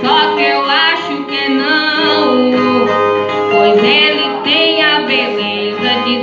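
Violas strummed as accompaniment to a repente sung in sextilhas, with a drawn-out sung vocal line wavering over the strings.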